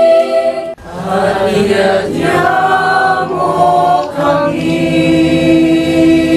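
Teenage choir singing: a held chord breaks off sharply under a second in, then the voices come back in with moving lines and settle on another long held chord about four and a half seconds in.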